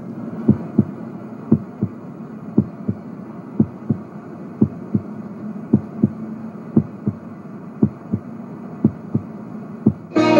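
A slow heartbeat: paired low thumps (lub-dub) repeating about once a second, over a faint steady hum.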